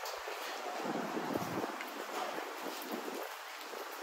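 Outdoor city street ambience: a steady, even hiss of background noise with a few faint soft taps.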